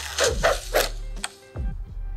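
Animated film soundtrack: several quick whooshing sound effects in the first second and a sharp click about a second in, over music with a low held note, as a comb is wrestled through thick hair.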